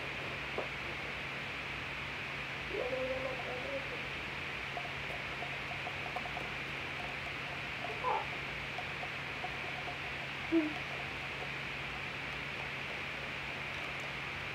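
Steady background hiss, with a few brief, faint voice sounds and one short word near the end.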